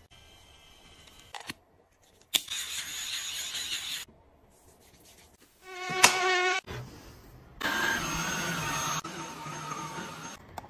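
Small electric motors of household gadgets whirring in separate short bursts, with a thin insect-like whine. One burst comes about two and a half seconds in, a short wavering one comes about six seconds in and is the loudest, and a longer one starts near eight seconds.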